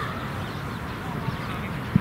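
A shout cuts off at the start, leaving a steady low outdoor rumble. A single short dull thud comes near the end.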